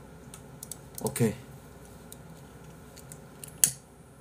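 Scattered faint clicks, then a single sharp click about three and a half seconds in as a lighter is struck to light a cigarette. A man makes a brief voiced sound about a second in.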